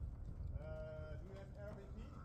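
A person's voice drawn out on one held pitch for about half a second, over a steady low rumble.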